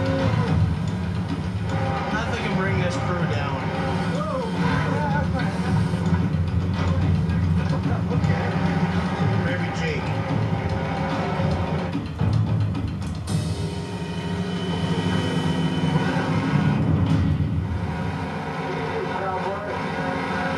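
Television soundtrack of crab-boat deck work: a steady low machinery drone under a background music bed, with indistinct voices. It is heard through a TV's speaker.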